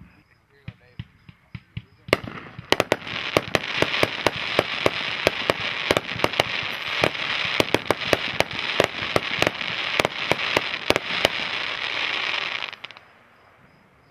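A 36-shot, 500 g consumer fireworks cake (GM434 Quick Crackle) firing. A few faint pops come first, then from about two seconds in a rapid run of sharp shot reports over a dense, continuous crackle of crackling stars. It stops abruptly about a second before the end.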